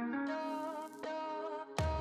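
Background music: a sustained melodic line, with a heavy bass and drum beat coming in near the end.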